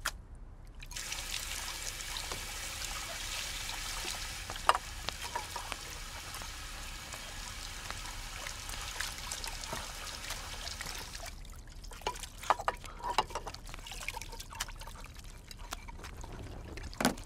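Kitchen tap running into a stainless steel sink while ceramic bowls are washed under it, with a few sharp clinks. The water stops about eleven seconds in, and is followed by a string of short clinks and knocks from the bowls being handled.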